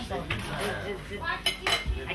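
Dishes and cutlery clinking at a set table, with a quick cluster of sharp clinks about a second and a half in, over faint background chatter.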